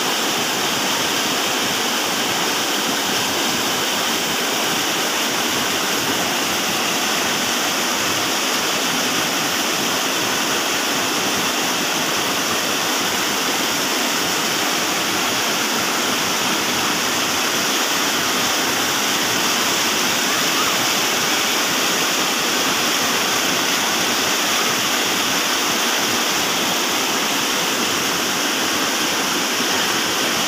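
Mountain stream pouring over boulders in a small cascade: a steady, loud rush of white water close by.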